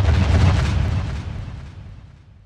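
A deep cinematic boom hit from the end-graphic sound design: one sudden heavy impact with a rumbling tail that fades away slowly over about two seconds.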